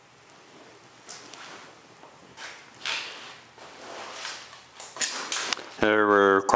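A person moving about close by: a string of short, irregular scuffs and rustles, like footsteps and handling noise, spread across the few seconds.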